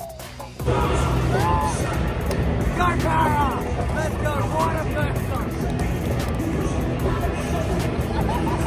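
Stadium crowd noise and PA music that cut in suddenly about half a second in. Over them, a man is shouting and whooping close to the microphone in bursts between about one and five seconds.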